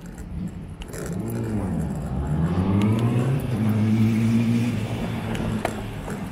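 A motor vehicle engine accelerating nearby: its pitch climbs, drops back as at a gear change about a second and a half in, climbs again and holds steady, loudest just past the middle.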